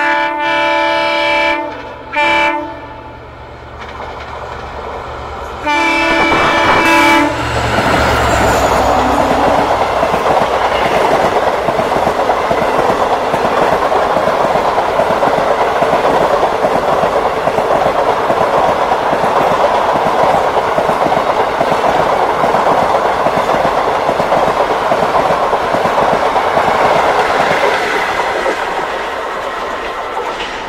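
A locomotive horn sounds three times: a blast at the start, a short one about two seconds in, and another about six seconds in. Then an express train passes close by, its coaches rushing over the rails with a steady clickety-clack that eases off near the end.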